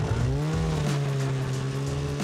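Snowmobile engine rising in pitch as it revs up shortly after the start, then holding steady revs as the sled pulls away through the snow.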